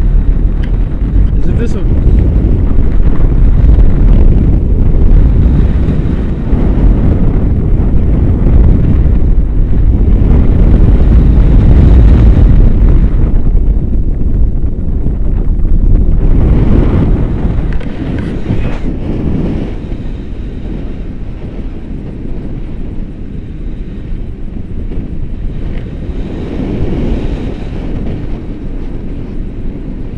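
Wind buffeting an action camera's microphone in paraglider flight: a loud, dense low rumble that eases off about eighteen seconds in.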